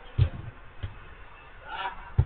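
Dull thud of a football being kicked on an artificial-turf pitch, then a fainter second thud, and a short shout from a player near the end.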